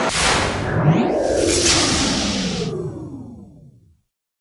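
A rushing whoosh that starts abruptly and surges again about a second in. It then fades away to silence over the last second.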